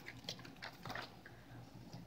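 Faint paper rustling and small clicks of a book page being turned by hand.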